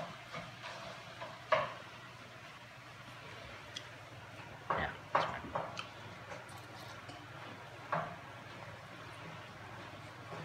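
A few light taps and clicks of hands working at a wooden cutting board while wontons are folded, two close together about halfway through, over a faint steady hum.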